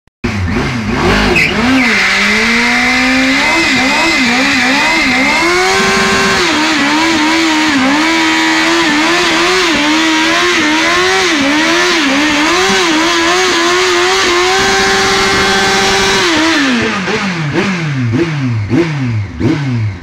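Yamaha YZF-R1's inline-four engine held at high revs in a stationary rear-wheel burnout, the rear tyre spinning and squealing on concrete. The revs climb over the first couple of seconds and waver while held high. Near the end they drop into a string of quick throttle blips.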